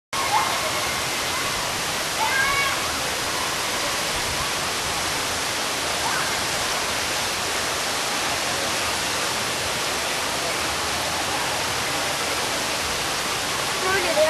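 Steady rush of flowing, falling water, with a few brief faint voices in the distance.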